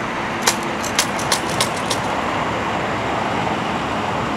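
Steady running of vehicle engines, with a quick series of about six sharp clicks in the first two seconds.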